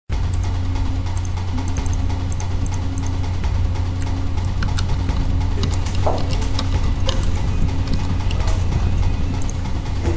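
A steady low drone of suspenseful film score, with faint high electronic beeps in the first few seconds and scattered light clicks later on.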